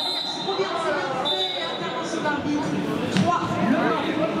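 Voices talking in a large echoing indoor arena, with a thin steady high tone heard twice in the first two seconds and a sharp click a little after three seconds in.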